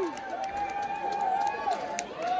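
Concert audience between songs: one long held "woo" from the crowd that wavers and drops away near the end, over low crowd chatter and scattered claps.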